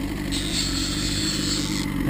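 Small outboard motor running steadily at low speed. A high hiss sits over it from about a third of a second in until just before the end.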